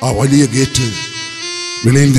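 A man's voice declaiming, then two held notes from the harmonium and clarinet accompaniment, the second a step higher. The voice comes back near the end.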